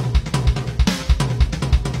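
Roland electronic drum kit playing a rapid, even three-note fill over and over: left hand on the snare, right hand on the floor tom, then the kick drum.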